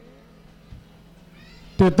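A man's amplified preaching voice trails off at the end of a long, drawn-out chanted word, with a gliding pitch. A quiet pause follows with a faint steady hum from the sound system, and he starts speaking again near the end.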